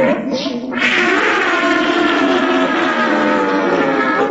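A voice holding a long, wavering, cat-like wail.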